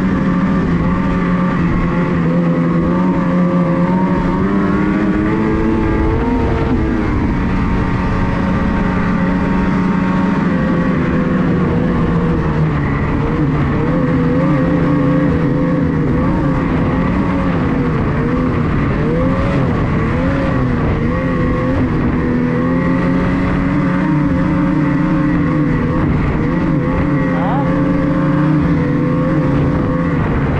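Snowmobile engine running steadily under throttle while riding, its pitch climbing about six seconds in and wavering up and down in the middle as the throttle changes.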